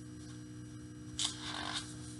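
A picture-book page being turned: one short papery rustle about a second in, over a steady low hum.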